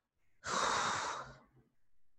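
A man's long breath out, a sigh into the microphone lasting about a second, starting about half a second in.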